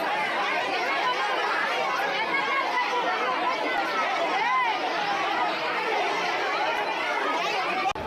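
Crowd of many people talking over one another at once in a heated argument.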